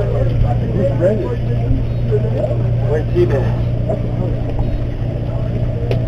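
Steady low drone of a sportfishing boat's engine running, one even tone throughout, with people talking over it.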